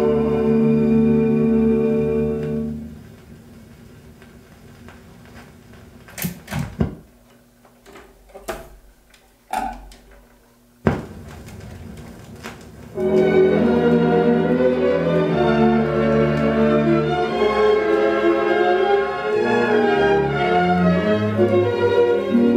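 Orchestral music played from a 78 rpm record: a held chord ends about three seconds in, followed by a quieter stretch of record surface noise with a few sharp clicks and pops. The orchestra starts the next selection on the side about thirteen seconds in.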